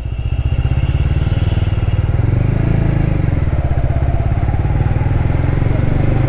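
Honda CBR150R's single-cylinder engine running at low revs as the bike rides slowly, a steady, rapid, even pulsing.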